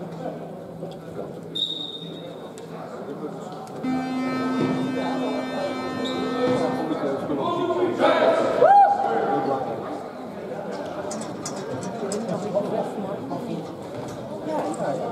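Sports-hall buzzer sounding one steady note for about three seconds, marking the end of a timeout, over the echoing chatter of players and spectators. Near the middle, a single loud shout rises in pitch.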